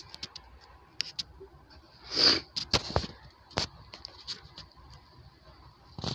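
Light handling noises as ornaments are hung on a small artificial Christmas tree: scattered small clicks and rustles, with a brief louder rustle about two seconds in and a few sharp ticks just after it.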